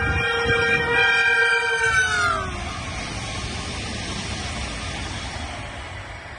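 Siemens Velaro high-speed train passing at speed, sounding a long multi-tone horn whose pitch drops sharply a little over two seconds in as the train goes by. The rushing noise of the train then continues, slowly fading as it moves away.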